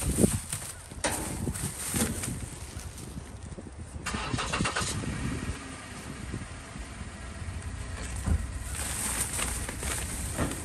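Groceries being loaded from a shopping cart into a car's back seat: plastic shopping bags rustling and crackling in bursts, with a few knocks of items set down, over a steady low rumble.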